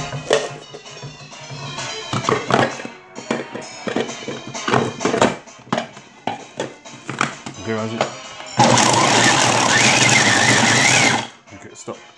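Small electric food chopper running for about two and a half seconds near the end, chopping chunks of chocolate, then stopping suddenly. Background music and scattered clicks and knocks come before it.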